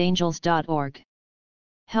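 Only speech: a narrating voice reading aloud. It stops about a second in and falls to dead silence before resuming at the very end.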